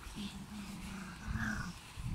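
Griffon Bruxellois dogs at play, one giving a drawn-out low growl that lasts well over a second.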